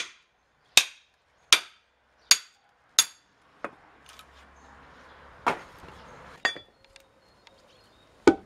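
A hammer striking a steel splitting tool driven into an oak log, five sharp ringing metal-on-metal blows about three quarters of a second apart. After that come a few softer wooden knocks as the split stave comes free and is handled.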